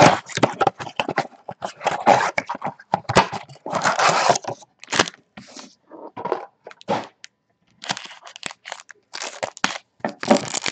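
Wrapped trading-card packs being handled and torn open: the plastic wrappers crinkle and crackle in irregular bursts, with a short pause about seven seconds in.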